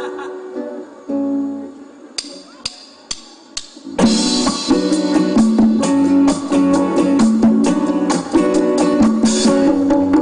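Live band music: a few quiet guitar notes, then four evenly spaced clicks counting in, and about four seconds in the full band comes in loud with guitars, bass guitar and drums.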